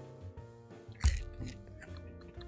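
Quiet background music, with one sharp crunch about a second in and two fainter crackles after it: a whole dried cricket being bitten.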